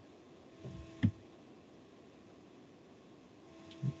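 Quiet room tone on a remote-meeting microphone with one sharp click about a second in. A faint electrical hum comes and goes.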